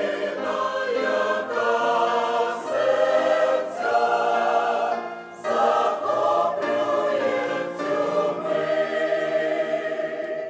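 Mixed choir of men's and women's voices singing a Christmas song in harmony. There is a short break between phrases about five seconds in.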